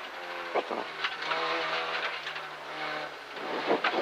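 Peugeot 205 F2000 rally car's four-cylinder engine heard from inside the cabin, pulling hard, its note shifting in pitch a couple of times as the driver works the throttle and gears through a corner, with a few brief knocks from the car over the road.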